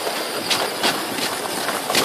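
Scale RC crawler truck driving over crusty snow and ice: its electric motor and gears running with tyres crunching, mixed with footsteps crunching in snow and a few sharper crunches.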